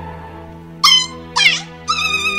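Dog-like yelps over steady background music: a short high yelp, then one falling in pitch, then a long held whine starting near the end.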